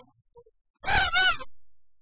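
A person's loud, high-pitched wordless yell, about half a second long, starting about a second in.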